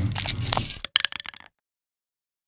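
Sound effect of an animated outro logo: a noisy rush with a scatter of sharp clicks that cuts off suddenly about a second and a half in.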